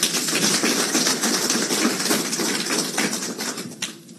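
Audience applauding, a dense patter of claps that starts abruptly and dies away near the end.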